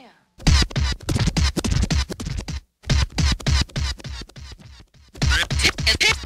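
DJ scratching a record on a turntable: fast back-and-forth cuts over a drum beat, with short breaks about two and a half and five seconds in.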